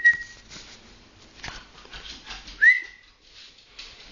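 Dog recall whistle: a held whistle note that ends just after the start, then a short upward-swooping whistle a little under three seconds in, with faint taps between them.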